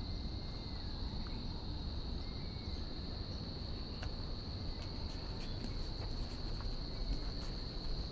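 A continuous high-pitched insect drone from the woodland, holding one steady pitch throughout, over a constant low rumble.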